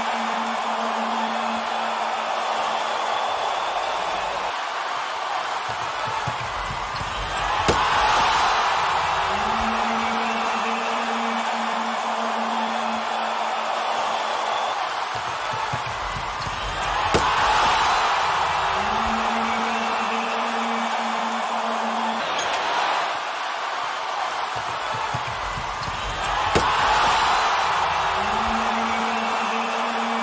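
Arena crowd noise with a slam dunk heard three times, about nine seconds apart: each time a sharp slam of the ball through the rim, then the crowd's cheer swelling up.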